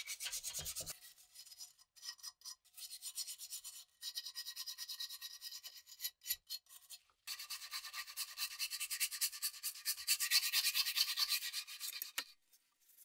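Wire brush scrubbing rust from wet pressed-steel toy truck parts, a rapid scratchy back-and-forth rasp. It comes in runs of a few seconds, with short breaks about a second in, near four seconds and near seven seconds.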